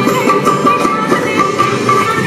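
Live Bollywood band playing an instrumental passage: a short high melody figure repeating over a steady bass and percussion beat.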